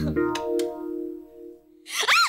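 A short music sting: one chord with a low hit as it starts, held and fading out after about two seconds.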